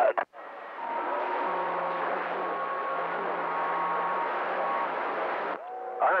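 Radio receiver hiss and static between two stations' transmissions, with several faint steady whistles from carriers beating together in the noise. It cuts off suddenly about five and a half seconds in, just before the next voice comes through.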